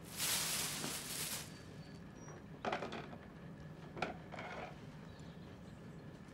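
Rummaging among boxes of belongings: a burst of rustling that lasts about a second and a half, then a few shorter rustles and a light knock about four seconds in, over a faint steady room hum.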